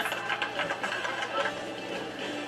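A small group of people clapping their hands, quick irregular claps that thin out after about a second and a half, over a low murmur of voices.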